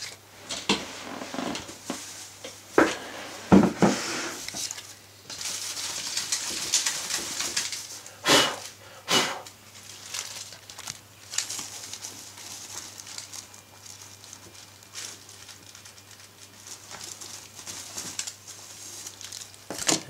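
Plastic bin liner crinkling and rustling as a cloth is shaken out over a small bin to tip eraser shavings into it, with a few knocks about three to four seconds in as the bin is handled on the desk and two louder rustles about eight and nine seconds in.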